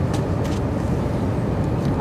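Steady low rumble of outdoor background noise, with a couple of faint clicks in the first half-second.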